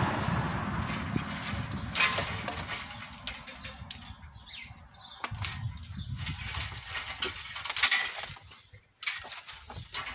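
Hand pruning shears snipping through dry grapevine canes, a few sharp cuts spread over the seconds, with the rustle and clatter of cut canes being pulled from the vine and dropped on a pile.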